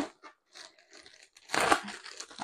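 Plastic mailer bag crinkling as it is handled, faint at first, then a short, louder crunch about one and a half seconds in.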